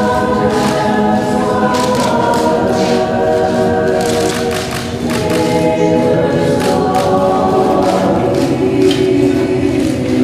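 A choir singing, many voices holding long notes together and moving to a new chord every second or two.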